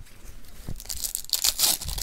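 Foil trading-card pack wrapper crinkling and rustling as it is handled, loudest in the second half.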